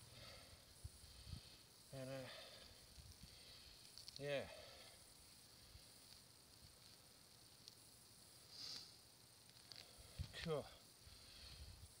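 Near silence: a faint steady outdoor hiss, with a few soft clicks and a brief rustle.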